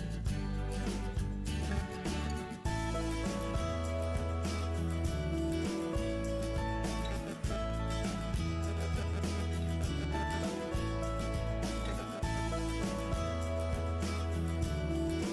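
Background music with a steady beat: a guitar-led instrumental track over a held bass line.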